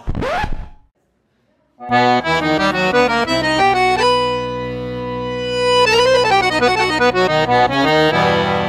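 Recorded forró music led by an accordion, starting about two seconds in, with the accordion holding one long note in the middle. Before it comes a brief rising sweep, then a moment of silence.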